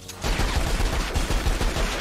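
Cartoon gunfire sound effect: Yosemite Sam's guns firing a rapid, continuous volley of shots that starts about a quarter second in and runs on, with a falling whistle near the end.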